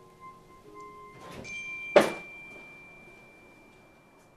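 A door slams shut once, loudly, about halfway through, with a softer knock just before it. Quiet background music with held notes plays throughout.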